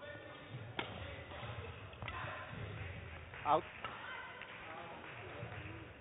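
Badminton racket strikes on a shuttlecock during a rally, sharp hits about a second and two seconds in, echoing in a large sports hall.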